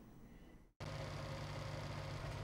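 Faint room tone that drops out for an instant about three-quarters of a second in, then a steady low hum that runs on evenly, like a machine or ventilation running.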